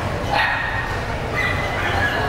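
A dog gives a sharp, high yip about half a second in and another short, high call about a second later, over a steady murmur of background talk.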